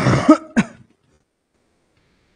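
A man clearing his throat: two short bursts within the first second.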